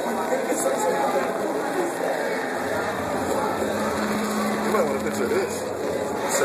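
Indistinct voices of people talking, with a low steady hum for about two seconds in the middle.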